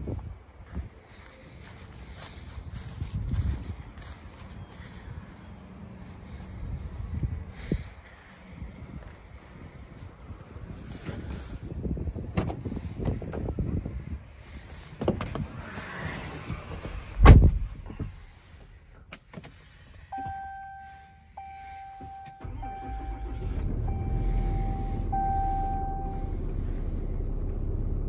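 A 4500 chassis-cab truck: handling noise, then a single loud thump about two-thirds of the way in, like the cab door shutting. A chime follows, beeping about once a second for several seconds, and the engine starts and settles into a steady low idle near the end.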